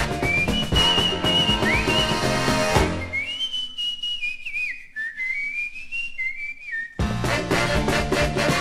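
A whistled melody over a New Orleans rhythm-and-blues band. About three seconds in, the band stops and the whistling carries on almost alone for about four seconds. The full band comes back in near the end.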